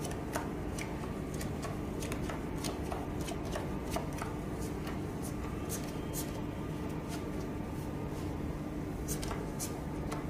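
Playing cards being dealt from the deck and laid on a felt poker table: an irregular run of light card snaps and flicks, thick at first, sparser midway and picking up again near the end, over a steady low hum.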